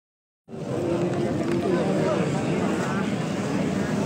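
Dense crowd babble: many voices talking and calling at once, starting abruptly about half a second in and holding steady.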